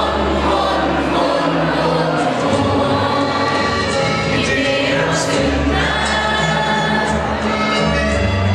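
A large group of school students singing together, like a choir, over long held low bass notes.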